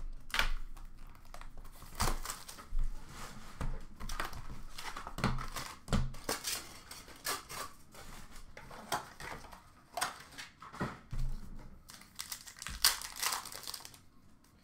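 Plastic wrapping crinkling and tearing in short, irregular rustles and snaps as a sealed box of hockey cards is opened by hand.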